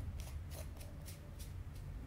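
A bundle of dry herbs crackling and rustling as it is held in a candle flame for smoke cleansing: an irregular run of short, crisp crackles, about five a second.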